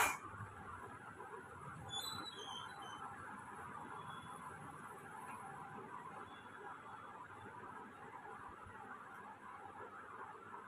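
Soft steady rustling of hands rubbing and working through long oiled hair. There is a sharp click at the very start and a few brief high chirps about two seconds in.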